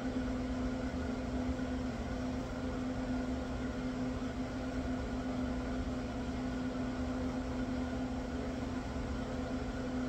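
A steady mechanical hum with one strong low tone and a faint noisy background, unchanging throughout, with no sudden sounds.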